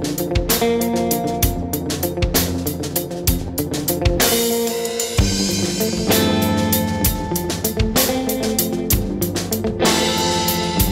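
Instrumental jazz-infused prog rock recording: guitar and drum kit playing a steady beat. About four seconds in, a cymbal wash rings out while the low end drops away for a moment, then the full band comes back in.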